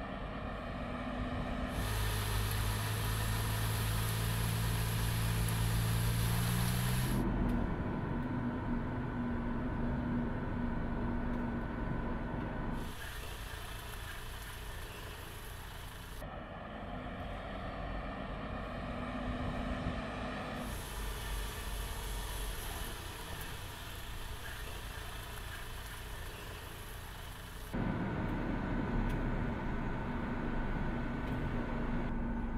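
Mercedes-Benz test truck running at low speed on a test track, with a low steady engine hum. The sound changes abruptly several times as different shots are cut together, and a high hiss comes and goes between shots.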